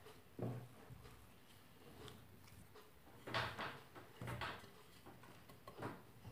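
Faint handling sounds of hands mixing and kneading soft yeast dough, with a few soft thumps, two of them a little past the middle.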